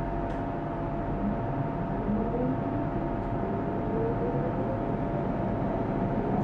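London Underground train running, heard from inside the carriage: a steady rumble and hiss with a whine that rises steadily in pitch as the train gathers speed.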